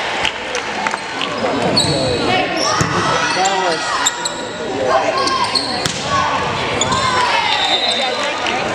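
Live sound of an indoor volleyball match: players shouting and cheering in a reverberant gym, with sharp hits of the ball and brief squeaks of shoes on the hardwood court.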